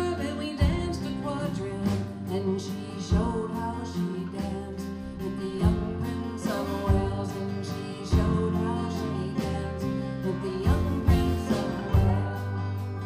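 A live acoustic country band playing: a woman singing over strummed acoustic guitars, with a lap steel guitar sliding between notes.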